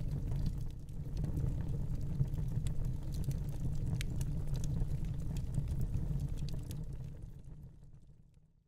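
Low, steady rumble with scattered faint crackles, a fire sound effect under animated title graphics, fading out near the end.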